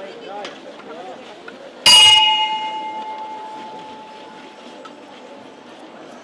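One strike of the bell on a Holy Week procession throne (the throne's command bell), about two seconds in, ringing on and fading away over the next few seconds. On such thrones the bell is the signal to the bearers.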